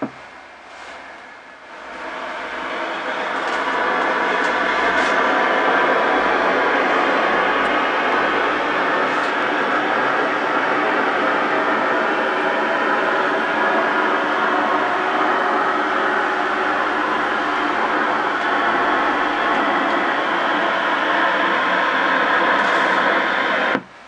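Shortwave receiver hiss: band noise in an AM receiver's narrow audio passband. It swells over the first few seconds, holds steady, then cuts off sharply near the end, as happens when the received station's carrier drops off and then comes back on.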